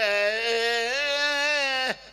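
A man's voice holding one long chanted note on the last syllable of a recited Urdu line, rising slightly about halfway and cutting off sharply near the end.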